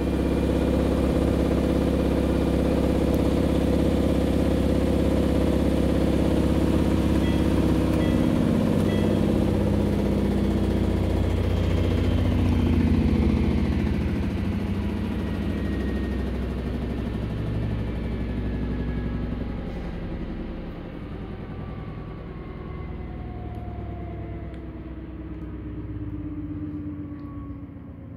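Maytag Bravos XL top-load washing machine spinning its drum at top speed, about 1,000 rpm, with a steady whir. About halfway through, the drum begins to slow and coast down: its hum falls in pitch and fades.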